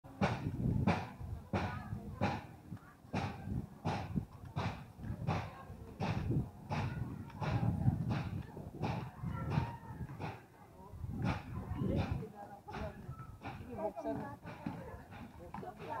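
Footsteps of someone walking at a steady pace, about one and a half steps a second, with indistinct voices around.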